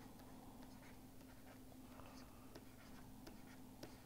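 Near silence with the faint taps and scratches of a stylus writing on a tablet, over a steady faint hum.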